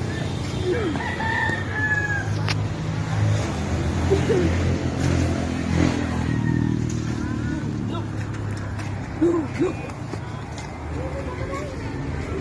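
A rooster crowing in the background, over a low steady hum and scattered voices.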